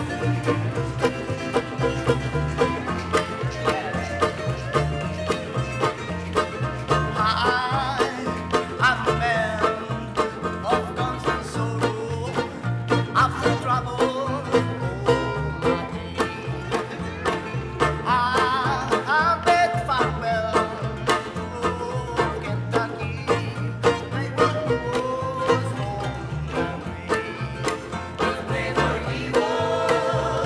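Live acoustic bluegrass-style band playing: banjo, resonator guitar, ukuleles and double bass over a steady clicking beat. Voices join in singing near the end.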